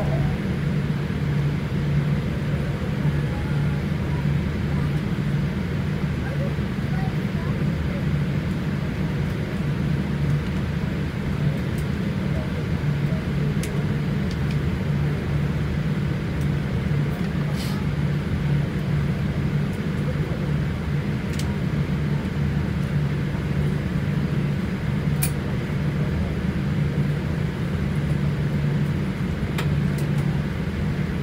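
Airliner cabin noise while taxiing: a steady low drone from the jet engines at idle and the cabin air, with a few faint clicks in the second half.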